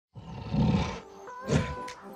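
Intro sound logo: a deep animal roar, then a second shorter roar under held musical tones, ending in a sharp snap.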